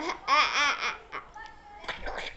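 A young boy laughing out loud in high-pitched bursts, loudest in the first half second, then trailing off into a few short, quieter sounds.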